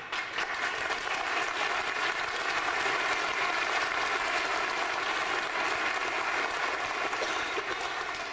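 Audience applauding. It starts suddenly, holds steady, and dies away near the end.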